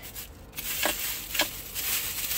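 Thin plastic grocery bag rustling as it is picked up and moved, with two brief sharp crinkles or clicks about a second in.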